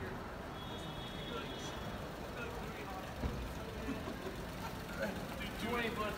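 City street at night: steady traffic rumble under the chatter of passersby, with voices coming closer and louder near the end. A faint high tone sounds briefly about half a second in, and there is a single knock about three seconds in.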